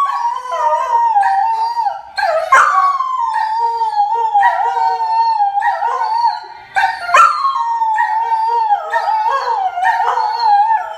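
Greyhound howling: long, wavering howls that sag and rise in pitch. The howling breaks off briefly about two seconds in and again about six and a half seconds in, then starts anew each time.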